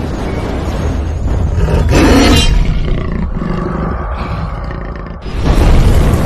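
A big cat's roar used as a sound effect in an animated logo sting, loud and continuous with a deep rumble. There is a brief brighter burst about two seconds in and a fresh swell just before the end.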